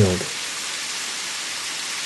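Steady, even rush of flowing water: a continuous hiss with no distinct drips or splashes.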